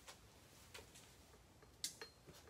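Near silence with a few faint clicks, and one sharper click near the end.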